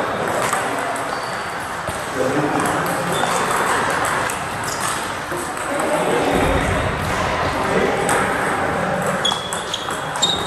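Table tennis balls clicking against tables and bats, over a steady murmur of voices in a large hall.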